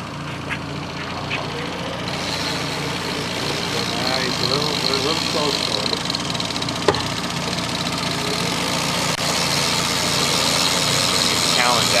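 Boat motor running steadily, growing gradually louder from about two seconds in, with a single sharp knock about seven seconds in.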